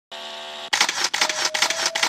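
A rapid run of sharp clicks, about four a second, begins under a second in over a single held tone. It is preceded by a brief steady chord.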